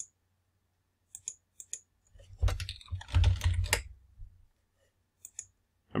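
Computer keyboard typing and mouse clicks: a few single sharp clicks, then a run of keystrokes with heavier dull knocks for about two seconds, then two more clicks near the end.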